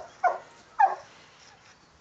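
A dog barking: a few short, high barks in the first second.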